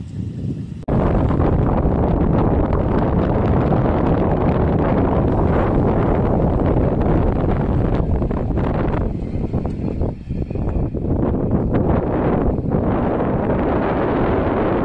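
Wind buffeting the microphone of a moving vehicle, with the vehicle's running noise underneath. It is a loud, dense rumble that starts abruptly about a second in and dips briefly twice near the end.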